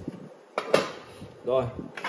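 A single short knock of stainless-steel cookware being handled, about three-quarters of a second in.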